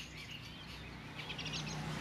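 Faint outdoor birds chirping in the background, with a quick run of short high notes a little past halfway, over a low steady hum.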